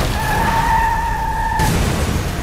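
Car tyres skidding on a wet, icy road: a steady high screech over a rush of noise, cutting off about a second and a half in.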